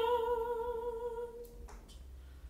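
A soprano holding a long sung note with a wavering vibrato, which dies away about one and a half seconds in, leaving only a low steady hum.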